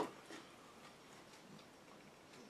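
A single sharp tap of a plastic microwave dish being set down on a table, followed a moment later by a fainter tick.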